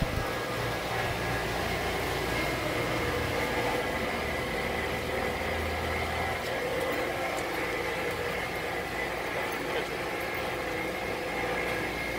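A vehicle engine idling steadily, with a low hum and a few steady higher tones, among faint background voices.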